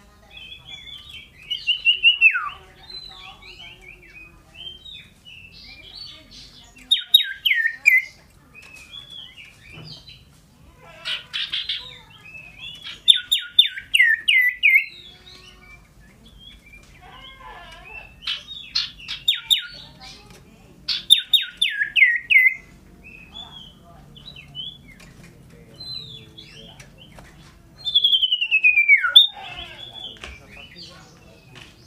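Caged common iora (cipoh) singing loudly in bursts every few seconds. The song is made of quick runs of short falling notes and long downward-slurred whistles, one about two seconds in and another near the end.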